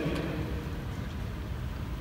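Pause in speech: steady room noise, a low rumble with a faint hiss and no distinct events.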